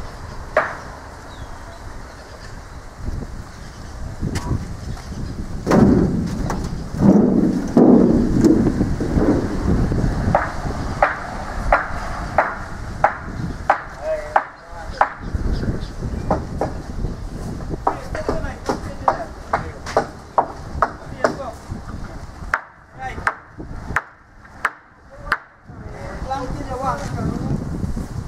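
A long run of sharp knocks on wood, roughly two a second, each with a short ring, starting about ten seconds in. Before it comes a louder stretch of mixed noise.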